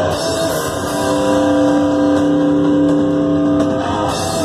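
Live thrash metal band playing loud distorted electric guitar over drums, with a chord held for about two seconds through the middle.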